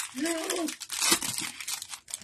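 Plastic trading-card pack wrapper crinkling as it is torn open by gloved hands, a dense run of crackles. A short vocal sound overlaps it in the first second.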